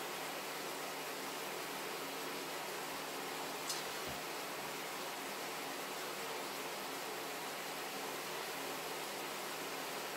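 Frying pan of onions and peppers sizzling softly in evaporating stock: a steady low hiss, with one faint click a little under four seconds in.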